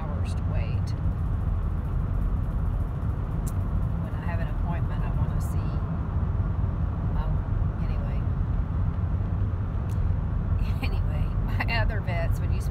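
Steady, low road and engine noise of a moving car heard from inside the cabin.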